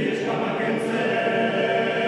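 Male a cappella choir of about ten voices singing a held chord in several parts, in a stone church.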